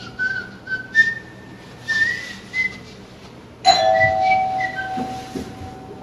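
Someone whistling a short tune in a few stepped notes. About two thirds of the way through, a single bell-like chime strikes and rings on, fading slowly while the whistling goes on faintly over it.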